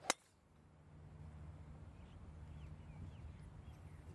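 A golf driver striking a ball off the tee: one sharp crack just after the start, then faint outdoor background.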